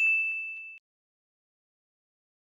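A bright ding sound effect, the notification-bell chime of an animated subscribe button, ringing on one high tone and fading out within the first second.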